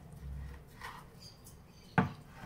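Kitchen knife handling slices of charcoal-grilled tri-tip on a wooden cutting board: faint low handling noise in the first half second, then one sharp click near the end.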